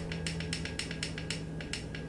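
Menu push button on a Clearview FPV goggle receiver module clicked rapidly, about a dozen sharp clicks in two seconds, scrolling the selected digit through 0–9 in the on-screen menu.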